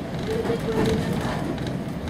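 Steady rumble of a moving railway carriage heard from inside, wheels running on the track, with passengers' voices over it.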